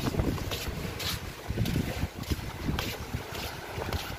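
Wind buffeting the camera microphone in uneven gusts, with footsteps on a wooden deck about twice a second.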